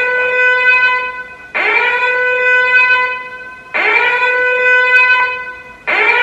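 Repeated long siren-like horn blasts, each swooping up into a steady tone and fading after about two seconds, starting again about every two seconds. The sound is ominous, like a purge warning siren.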